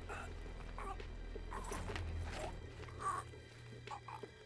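A man choking and gasping in short strangled bursts while being hanged, over a steady low music drone.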